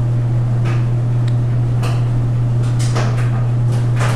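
Steady low hum of a running laundry machine, with a few light knocks and clicks scattered through it.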